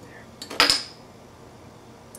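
A light tap, then a single sharp clink on the pint glass of beer, ringing briefly with a high tone.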